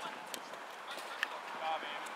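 Faint, distant shouting voices over steady outdoor field ambience, with a couple of light clicks.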